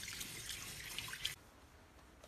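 Water splashing and sloshing in a plastic basin as a Chinese pond turtle's shell is scrubbed with a brush, with small drips and splashes. The sound cuts off suddenly after about a second and a quarter, leaving only faint room sound.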